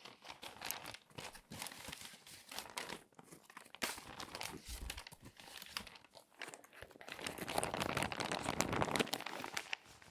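Glossy magazine paper crinkling and rustling as a page is lifted and then pressed flat by hand, with sharp crackles throughout. The crinkling grows denser and louder about seven seconds in, then eases near the end.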